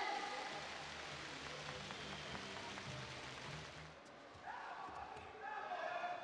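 Indoor judo arena ambience: a steady low hall noise, then from about four seconds in, voices calling out and a few light knocks as a bout gets under way on the mat.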